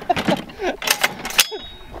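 A short laugh, then a few sharp metallic clicks with a brief thin ring as the action of a Serbu BFG-50A .50 BMG rifle is worked to clear it after the shot.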